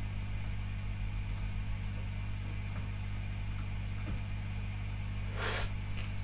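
Steady low mains hum from a live electric guitar and amplifier rig left idle, with a few faint ticks and a brief rustle about five and a half seconds in.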